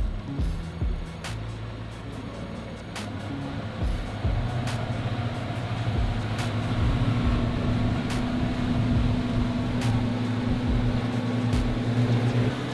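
Twin outboard motors on a water-taxi boat running and throttling up, growing louder about four seconds in, with the hiss of the churning wake.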